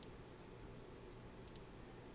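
Faint computer mouse clicks, one at the start and another about a second and a half in, over quiet room tone.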